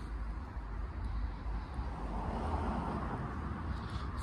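Outdoor background noise: a steady low rumble with a faint hiss that swells slightly in the middle, with no clear engine note or distinct event.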